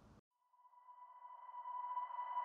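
A single steady synthesized tone that fades in out of near silence and grows louder, an intro swell in a product-video soundtrack.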